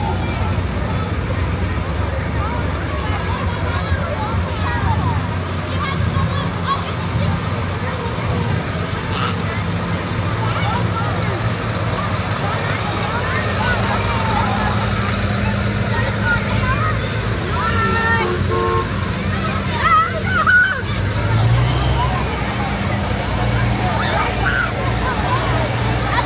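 Diesel engines of big four-wheel-drive farm tractors and a pickup truck rumbling slowly past, under the constant chatter of a crowd of children. A short pitched toot sounds about 18 seconds in, there is a loud burst of shouting soon after, and an engine's drone rises in pitch near the end as the next tractor approaches.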